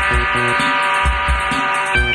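Live band music from a soundboard recording: held chords over a steady kick-drum beat of about two a second.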